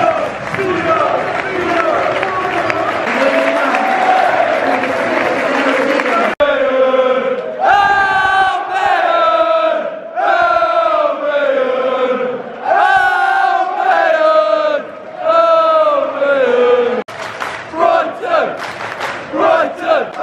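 Football crowd singing a chant together, loud and close, in falling phrases that repeat every two seconds or so. The sound cuts abruptly about six seconds in and again near the end.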